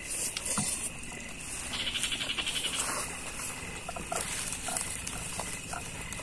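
Night chorus of calling wild animals: a steady high trill, with a louder pulsing call from about two to three seconds in. Faint clicks of spoons on plates are mixed in.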